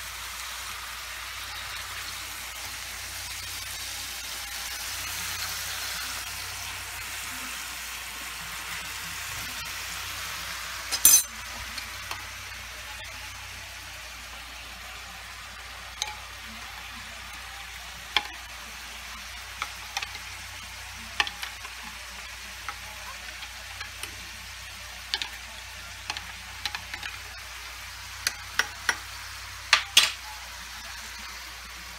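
Chuck roasts with onions and banana peppers sizzling steadily in a hot frying pan, with one sharp knock about a third of the way in. Later, a spoon stirs beef broth in a glass measuring cup, clinking against the glass again and again.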